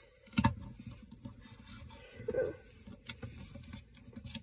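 Plastic action figures handled close to the microphone: a sharp knock about half a second in, then light clicks and rubbing as the figures' limbs are moved and posed.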